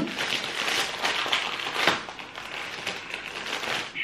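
Thin plastic toy wrapper crinkling and crackling as it is torn open and worked off a squishy toy, irregular throughout, with a sharper crackle about two seconds in.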